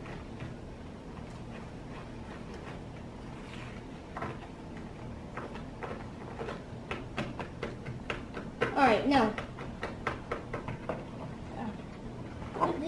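Light plastic clicks and knocks as ice-pop mold tops and sticks are handled and pressed into the molds on a table. They are scattered through the second half, with a short burst of voice just before the end.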